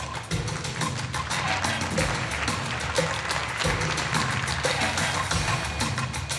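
Recorded dance music with a fast, steady percussion beat.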